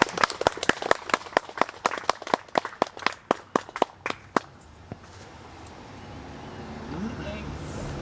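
Small audience clapping by hand after a noise/drone set, sharp irregular claps several a second that die away about four and a half seconds in. Faint voices follow near the end.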